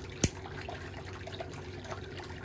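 A single sharp snip of steel nail nippers cutting a thick, fungus-damaged big toenail, about a quarter second in, over a low steady background hum with a few faint small clicks.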